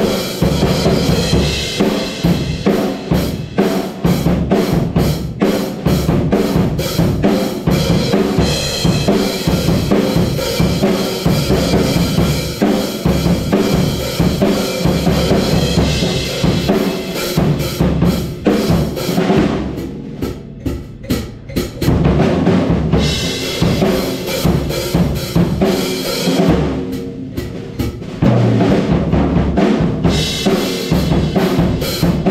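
Acoustic drum kit played hard in a rock groove: a huge 28-inch bass drum, snare, floor toms, and Paiste 2002 cymbals with Sound Edge hi-hats. About two-thirds of the way through, the cymbals stop for a few seconds while the drums keep going. They stop again briefly near the end before crashing back in.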